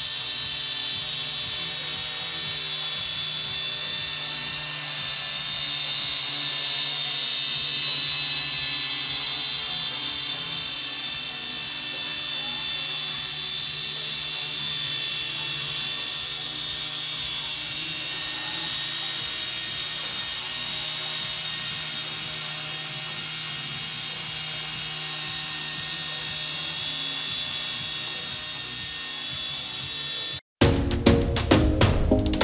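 MJX X708P quadcopter hovering and flying. Its small electric motors and propellers give a steady high-pitched whine with a lower hum beneath, swelling slightly as it moves.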